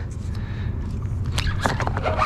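Steady low rumble of wind on the microphone, with a few short scuffs and clicks of handling about one and a half seconds in.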